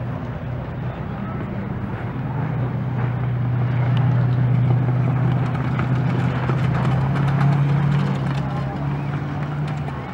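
A car's engine running on a dirt speedway track, a steady hum that grows louder from about three seconds in and falls away near the end as the car comes past.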